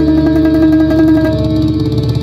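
Bandurria melody picked rapidly with a plectrum, holding one note in tremolo before moving to a new note about one and a half seconds in, over a recorded instrumental backing track.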